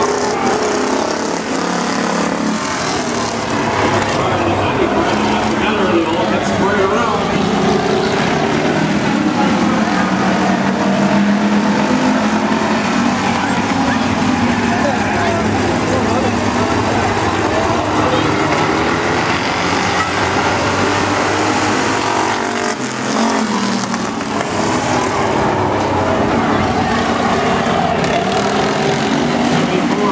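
A small pack of Bomber-class stock cars racing around an oval track, their engines running hard together in a loud, continuous drone. The engine notes rise and fall as the cars go through the turns, and the sound briefly eases about two-thirds of the way through.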